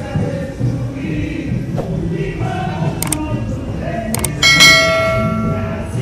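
Carnival parade music with singing and a steady low rhythm. About four and a half seconds in, a loud metallic clang rings out and fades over a second and a half.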